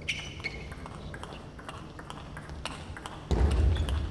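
Table tennis rally: the ball clicks sharply and irregularly off the bats and the table. There is a short high-pitched tone at the start, and a loud low rumble comes in near the end.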